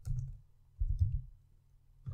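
A few computer keyboard keystrokes, sharp clicks with dull low thumps, as letters are typed: two bursts, at the start and about a second in.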